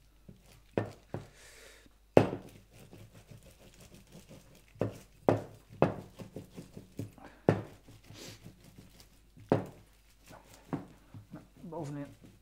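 A plastic sheet being handled and rubbed over wet acrylic paint while a plastic squeeze bottle of paint is squeezed and set down. Irregular crinkles and sharp knocks, the loudest about two seconds in.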